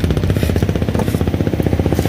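An engine idling close by, running with a fast, even pulsing throb.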